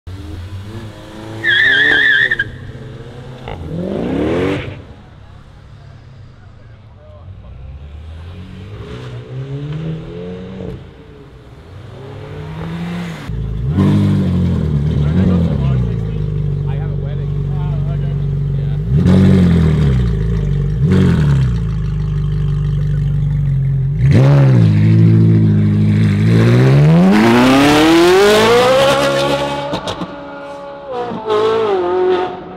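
High-performance car engines being revved with repeated throttle blips and held revs, then one car accelerating hard with a long rising engine note near the end.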